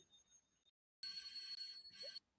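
An old telephone bell ringing on a black-and-white film's soundtrack, played back over a video call. The ring is high-pitched and starts about a second in, lasting about a second.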